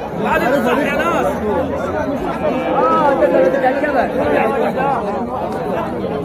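Crowd chatter: many men's voices talking over one another at once.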